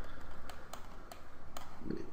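A few separate clicks of computer input at the desk, typical of mouse buttons and keys being worked, spaced unevenly over a low steady hum.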